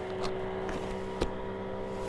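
A boat motor running nearby with a steady, even hum, with a couple of faint clicks over it.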